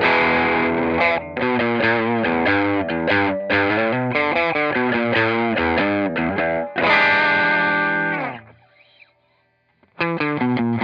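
Fender American Professional Telecaster played through an overdriven amp: a quick run of picked single notes. About seven seconds in comes a strummed chord that rings for over a second, then is damped, leaving near silence.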